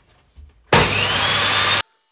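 Table saw switched on, its motor whine rising as it spins up under a loud rush of noise, cut off abruptly about a second later.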